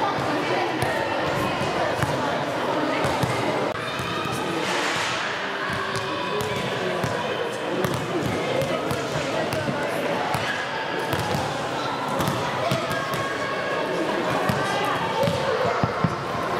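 Handballs bouncing repeatedly on the floor of a large sports hall, over continuous chatter of children's voices.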